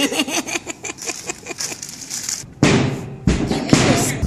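A woman laughing in a quick run of short pitched bursts, stopping about two and a half seconds in. Then come two loud, rough blasts of breathy noise with a heavy low end, the second longer than the first.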